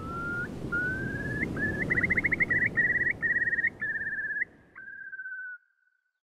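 Far Eastern Curlew calling: a run of rising whistled notes that quicken into a bubbling trill, ending in one falling note, over a low background rush. It cuts off about five and a half seconds in.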